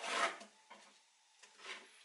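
Kitchen knife slicing through fresh pineapple on a wooden cutting board: one loud scraping cut at the start, then softer strokes about a second in and near the end.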